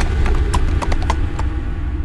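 Horses' hooves clip-clopping: a handful of sharp, irregularly spaced hoof clicks over a steady low rumble of a mounted troop on the move.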